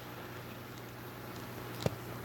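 Quiet room tone: a steady low hum under a faint hiss, with one short click near the end.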